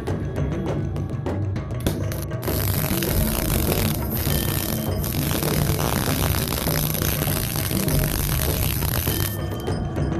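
Background music with a steady drum beat. A steady hiss joins it from about two and a half seconds in and stops just after nine seconds.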